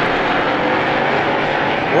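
Stock car race engines running together at speed on a short oval track, a steady dense drone.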